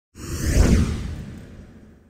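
Whoosh sound effect with a deep low rumble under it, swelling quickly just after the start and fading away over about a second and a half, as a logo-reveal sting.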